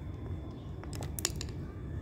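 A few short, light clicks about a second in as small wooden digging tools, a mallet and chisel, are handled and laid down on a tile floor, over a low steady rumble.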